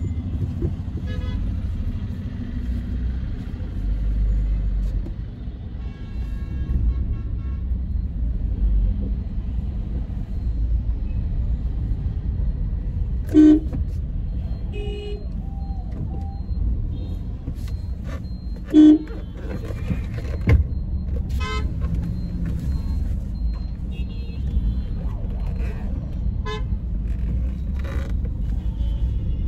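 Steady road and engine rumble inside a car cabin in heavy traffic, with two short car-horn honks about halfway through and again some five seconds later.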